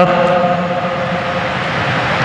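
A man's voice holding one steady, drawn-out hesitation sound through a microphone and loudspeaker, fading out near the end.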